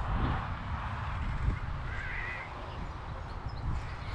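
Wind buffeting the camera microphone, a steady low rumble, with a brief faint higher-pitched sound about halfway through.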